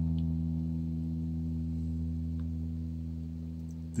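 An electric guitar note left ringing after being played, a low steady tone that fades slowly.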